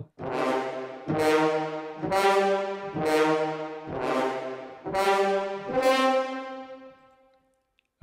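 Sampled French horn ensemble from the Metropolis Ark 3 library playing its 'upbeat single' articulation: about seven separate notes, roughly one a second, at changing pitches. The last note rings longer and fades out near the end.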